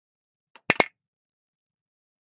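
Two quick, sharp clicks about a tenth of a second apart: a metal knitting needle being set down on a tabletop.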